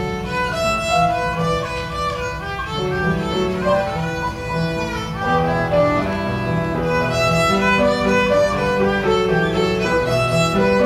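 Solo violin playing a traditional Irish jig, a continuous run of quick notes.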